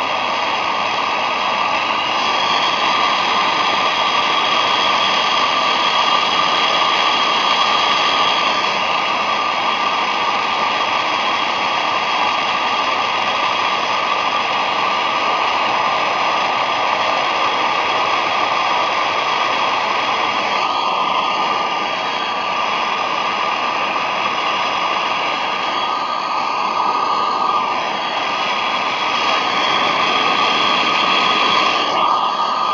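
Handheld gas torch burning with a steady, loud hiss as its flame heats a copper pipe joint for soft soldering.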